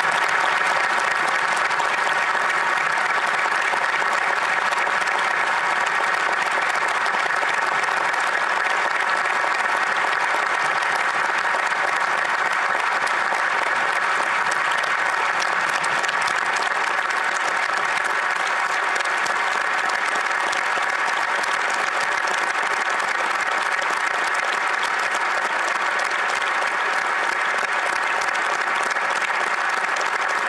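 A large crowd applauding in a sustained ovation, many hands clapping densely and steadily at an even level.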